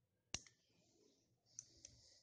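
Metal nail clipper snipping toenails: one sharp click about a third of a second in, then two lighter clicks near the end.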